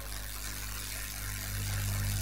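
Steady low electrical hum with a faint hiss from the microphone and sound system, with no voice on it.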